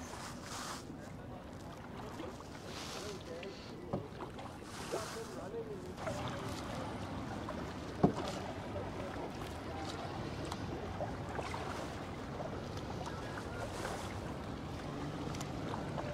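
Kayak paddle strokes swishing through calm canal water, about one every two seconds at first, then a steadier wash of water. One sharp knock about eight seconds in.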